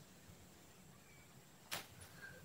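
Near silence with one brief swish about three-quarters of the way in: a hand and pen sliding across a paper notebook page.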